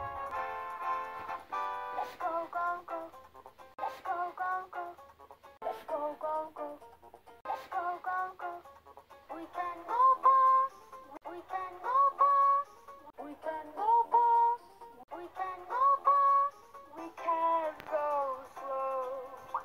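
A children's TV song: a voice sings "We can go fast" and "We can go slow" over music, many of the sung notes sliding up in pitch.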